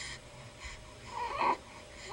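Baby cooing: a short high-pitched squealing vocal sound about a second in, with soft breathy exhales before it.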